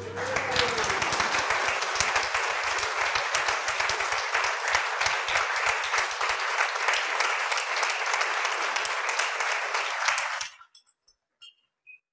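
Audience applauding, a dense run of many hands clapping that stops abruptly about ten and a half seconds in, followed by a few faint clicks.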